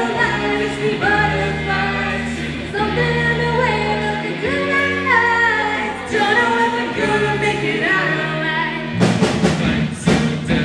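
Live pop-rock band playing, with held chords over a bass line and voices singing long, gliding notes; the drum kit comes in about nine seconds in.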